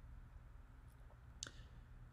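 Near silence: room tone with a low steady hum, and a single faint short click about one and a half seconds in.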